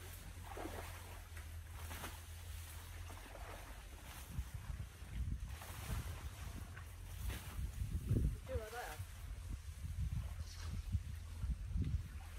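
Wind rumbling and gusting on the microphone, with faint voices in the background.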